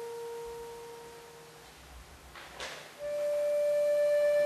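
Accordion playing a slow passage of long held notes: a sustained note fades away, a short airy hiss sounds about two and a half seconds in, then a louder new chord is held from about three seconds.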